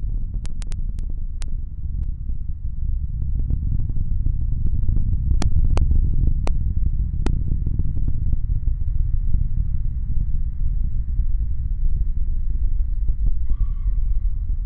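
Falcon 9 first-stage rocket engines burning during ascent, heard as a steady, deep, crackling rumble. A few sharp clicks come in two short clusters, one shortly after the start and one around the middle.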